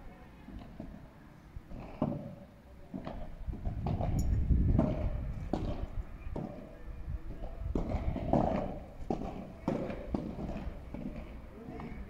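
Padel ball being struck back and forth with solid padel rackets during a rally: a series of short hollow pops, about one a second.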